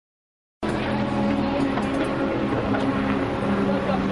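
A vehicle engine running steadily, cutting in abruptly about half a second in after silence, with a constant low hum.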